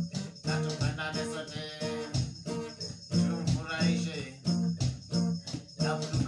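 Reggae played on an acoustic guitar, strummed in a steady rhythm, with a hand drum beating along.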